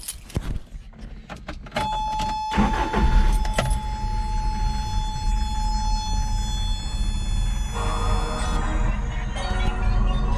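Toyota 22RE four-cylinder engine cranks and catches about three seconds in, then idles with a steady low rumble, a little shaky, which the owner puts down to valves needing adjustment. Over it a warning buzzer, the seatbelt reminder, holds one steady tone from just before the start and cuts off after about seven seconds. Keys jingle at the ignition before it.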